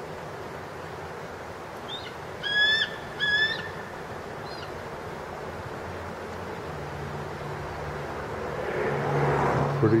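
A bird calls twice in quick succession about two and a half seconds in: two short, high whistled notes, each with a slight upward hook at the start. A couple of fainter chirps come around them, over a steady outdoor hiss, and a low rumble builds near the end.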